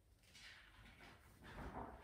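Faint rustle of a large paper picture-book page being turned by hand, in two soft swells, the louder one about a second and a half in.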